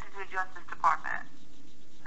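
Voices in a telephone conversation on speakerphone for about the first second, then a short pause with only faint line hiss.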